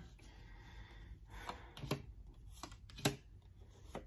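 A few light taps and clicks of tarot cards being drawn and laid down on a table, the clearest about three seconds in.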